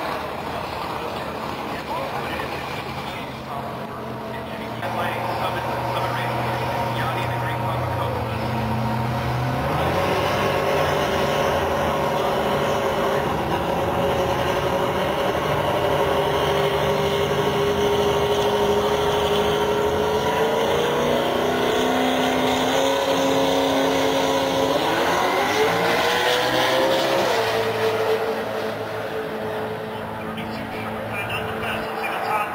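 Drag-racing cars' engines idling and revving at the starting line, several engine notes at once. The pitch steps up around two-thirds of the way through and climbs steeply near the end as a car pulls away, then settles.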